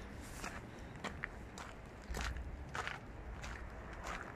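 Footsteps on a gravel path, a step about every half second, over a low rumble.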